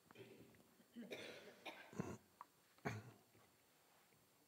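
A person coughing, about three short coughs a second apart, against near silence.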